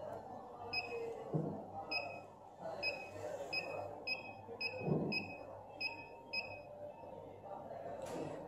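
Keypad beeps from a Balaji BBP billing machine: about ten short, high, identical beeps at uneven intervals as the scroll key is pressed over and over to step through the stored header and footer lines.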